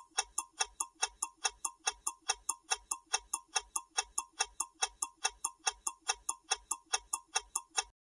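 Clock-ticking sound effect for a quiz countdown timer: even, sharp ticks, about four a second, that stop just before the answer is revealed.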